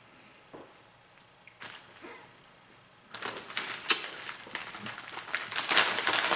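Plastic pepperoni package crinkling and rustling as a hand reaches into it, starting about halfway through, after a few faint soft handling ticks.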